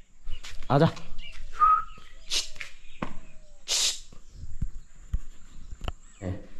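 A small bird trapped inside a room giving a brief chirp, with short hissing sounds and a few light knocks around it.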